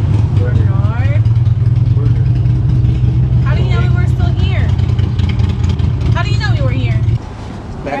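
A vehicle engine running close by with a loud, steady low rumble that cuts off suddenly about seven seconds in.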